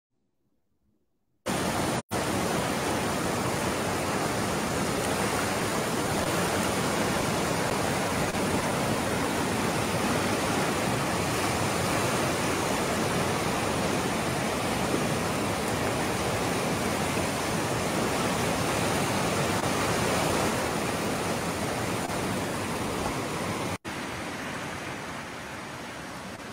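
Steady, even rushing noise with no pitch. It cuts out for a moment about two seconds in and again near the end, then carries on more quietly.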